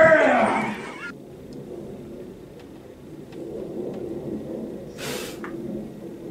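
A raised voice with swooping pitch that cuts off abruptly about a second in, followed by a quiet low background murmur with a short hiss about five seconds in.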